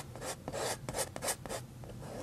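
Kitchen knife blade scraping and dragging paint across a small canvas in quick, repeated short strokes, several a second.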